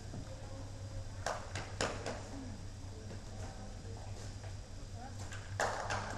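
Faint distant voices over a steady low hum, with a few sharp knocks about a second in and a louder knock near the end.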